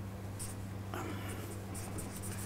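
Felt-tip marker writing on flip-chart paper: several short scratchy strokes, over a steady low hum.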